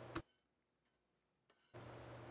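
Near silence: a single brief click just after the start, then dead silence, then faint room tone.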